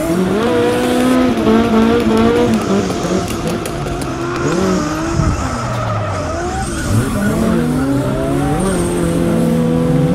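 Car engine sound of more than one car, revving up and down in overlapping rising and falling notes, with tire squeal over it.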